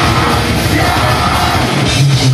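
Live heavy metal band playing loud: distorted electric guitars and drums, with the vocalist yelling into the microphone over them.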